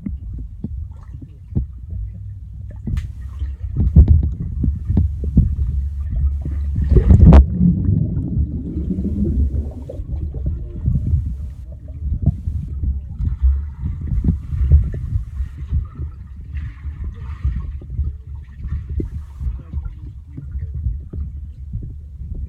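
Underwater sound picked up by a phone held below the water's surface: a low, muffled rumble of moving water with many knocks and clicks, and a louder rush of water about seven seconds in.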